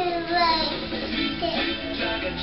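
A children's song plays from a television, with a young child's high voice over it.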